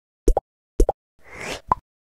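Short animated-logo intro sound effect: two quick double pops, a brief swelling whoosh, then one last pop with a short clear tone.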